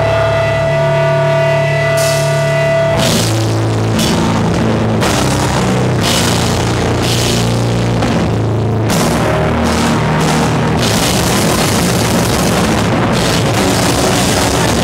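Powerviolence band playing live: a held guitar note rings for about three seconds, then drums and heavily distorted guitar and bass come in together at full volume and keep going.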